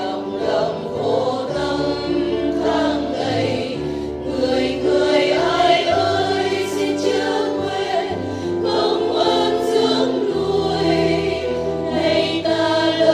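A choir sings a Vietnamese Catholic hymn in Vietnamese over steady instrumental accompaniment.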